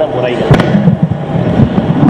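Many voices at once, loud and jumbled, with no single clear line of chant. A sharp click cuts in about half a second in.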